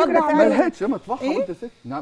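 Women talking in Egyptian Arabic, with a brief pause near the end.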